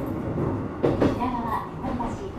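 Running noise of a Keikyu 1000 series electric train heard inside the car: a steady low rumble from the wheels and running gear, with one sharp knock about a second in. The train's recorded announcement voice carries on over it.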